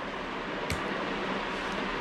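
Steady background hiss of a small room, with one faint click about a third of the way in.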